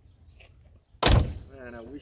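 The driver's door of a 1973 Cadillac Fleetwood Brougham d'Elegance being shut, a single slam about a second in.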